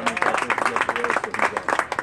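Spectators clapping, a rapid run of many hand claps with voices calling out among them.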